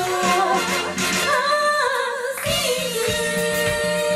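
Pop song sung live by a female vocal trio over a backing track with a steady beat. The bass and drums drop out for about a second midway, leaving the voices, then come back in.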